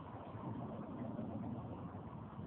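A steady, low background rumble.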